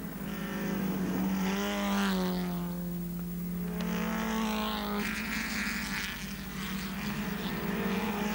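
Touring race car engines running at speed through a corner, the engine pitch rising and falling. The engine note changes abruptly about five seconds in.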